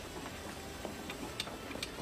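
A few faint, irregular clicks from a shopping cart being pushed along a supermarket aisle, over a steady hum of store room tone.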